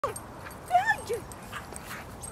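A Staffie giving short, high excited yips and whines during play, with a woman calling "Hey" over them.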